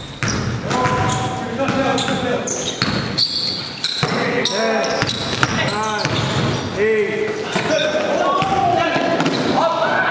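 A basketball being dribbled, bouncing repeatedly on an indoor gym floor, with voices carrying through the hall.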